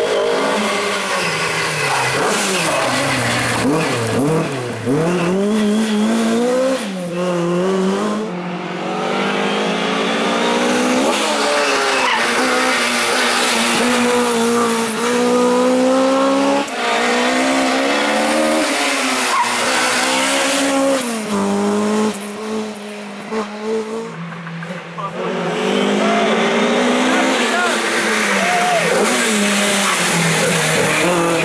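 Ford Escort Mk2 rally car's four-cylinder engine revving hard and being driven through bends, its pitch climbing and dropping again and again through gear changes and lifts.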